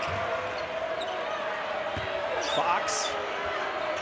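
Basketball being dribbled on a hardwood court over a steady background of arena crowd noise.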